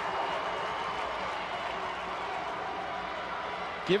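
Steady crowd noise in a football stadium between plays, with a commentator's voice coming in at the very end.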